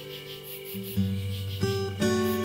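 Acoustic guitar instrumental music: plucked notes ringing over a low sustained bass note, with fresh notes struck about a second in and again near the end.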